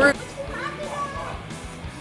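Teenagers' voices chattering faintly in a large room, with music under them.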